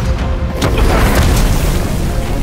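Explosion sound effect: a deep, rumbling boom with a sharp impact a little over half a second in, over dramatic background music.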